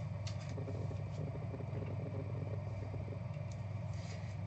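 Steady low hum, with faint rustles and a few light clicks of clear plastic as a trading card is slipped into a soft sleeve and a rigid plastic case.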